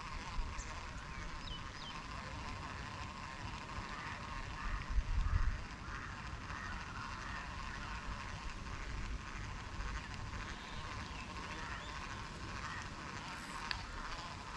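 Birds calling over a steady outdoor background, with a brief low rumble about five seconds in.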